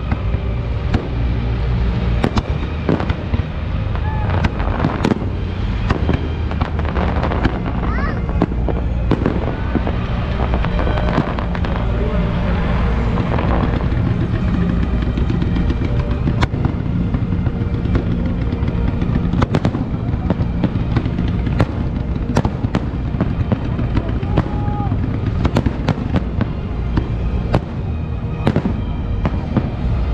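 Fireworks going off in an irregular run of sharp bangs and crackles, over a crowd's voices and a dense low rumble.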